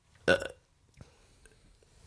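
A man's short hesitant "uh", then a pause of near silence with one faint tick about a second in.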